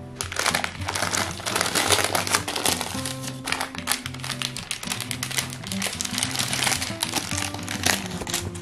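Baking paper crinkling and rustling in a rapid run of crackles as hands use it to roll up a sheet of minced meat, over background music.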